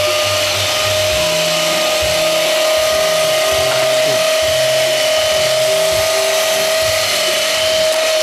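iRobot Roomba 560 robot vacuum running across a laminate floor: a steady high whine from its vacuum motor over a rushing hiss, with uneven low rattling from its brushes and drive wheels.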